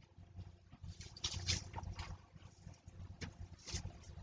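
Faint rustling and handling noises from shopping bags in the car, in short irregular bursts about a second in and again near the end.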